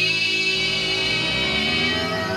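Rock music: a held, distorted electric guitar chord rings on throughout, with lower notes moving underneath it from about half a second in.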